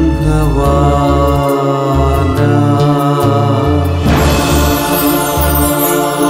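Orchestrated devotional song: a man's voice sings a slow, chant-like melodic line over low bass notes, and the backing swells with a bright wash about four seconds in.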